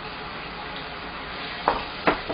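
Vegetables in a little water sizzling and bubbling in a frying pan over a gas burner, a steady sound, with a couple of short sharp knocks near the end from a wooden spatula working the pan.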